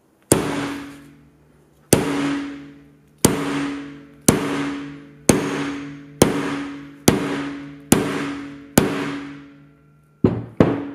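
A hammer striking an Apple Watch Ultra's titanium case nine times, each blow followed by a brief ringing that dies away. The blows speed up, from about a second and a half apart to under a second apart.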